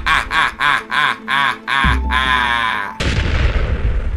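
Hearty laughter in quick repeated bursts, about four a second, ending in one long drawn-out laugh, over music with a steady low bass.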